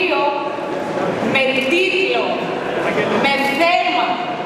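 Speech only: a woman giving a speech in Greek into a podium microphone.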